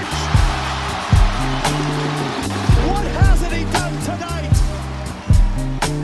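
Edit music with a heavy, repeating bass beat and sharp percussive hits, over an even roar of arena crowd noise from the game broadcast that thins out toward the end.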